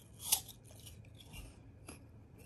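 Black Shiba Inu biting into a piece of raw apple: one loud, crisp crunch about a third of a second in, followed by a few faint chewing clicks.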